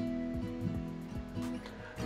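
Acoustic guitar being picked, a few notes struck one after another and left ringing.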